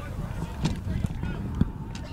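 Lacrosse players shouting calls on the field during play, with a couple of sharp clacks, one about a third of the way in and one near the end.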